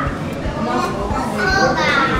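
Young children's voices talking and calling out, with a high-pitched voice near the end.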